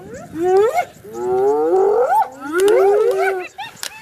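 Several spotted hyenas calling at once: overlapping rising whoops and squeals, each under a second long, following one another with short pauses.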